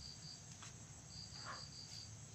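A cricket chirping faintly in the background: a high, pulsing trill, briefly at the start and again from about a second in, with faint pen-on-paper scratching in between.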